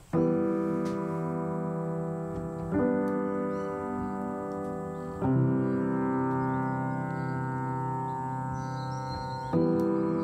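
Slow piano intro: four sustained chords struck roughly every two and a half seconds, each left to ring into the next.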